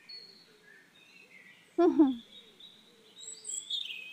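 Birds chirping faintly in the background, with one short voiced sound, a brief falling call, about two seconds in.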